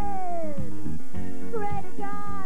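Live band music with a lead vocal: a long sung note slides down in pitch over the first second, then the singing and the band carry on.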